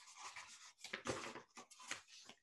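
Faint rustling and handling of paper in short, irregular bursts, as pages are shuffled.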